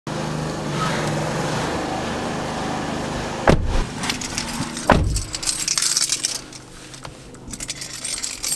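Two car doors shut with heavy thuds about a second and a half apart, a few seconds in, then car keys jingle. Before them there is a steady background hum.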